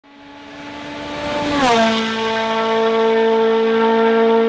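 A sustained pitched tone, rich in overtones, that fades in, slides down in pitch about one and a half seconds in, then holds steady and loud.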